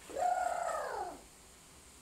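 One drawn-out vocal call, about a second long, that rises and then falls in pitch.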